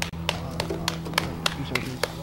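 A few sharp hand claps, irregular at about three or four a second, over a steady low hum.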